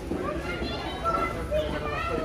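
Passers-by talking, with a child's high-pitched voice among them, over the steady hubbub of an outdoor shopping street.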